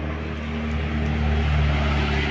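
A steady engine drone: a low hum with a hiss above it, swelling slightly in the middle.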